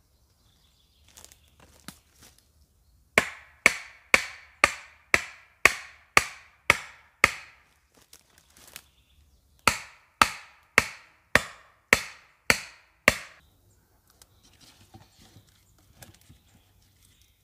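An axe striking a wooden stake: sixteen sharp blows at about two a second, in a run of nine, a short pause, then a run of seven.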